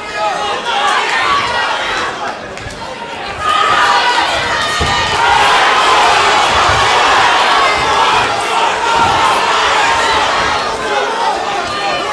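Boxing crowd shouting and cheering, many voices at once, swelling much louder about three and a half seconds in.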